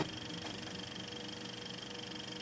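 Faint steady hiss with a thin steady hum and a faint high whine, with no speech or music: the background noise of the broadcast recording in a silent gap between segments.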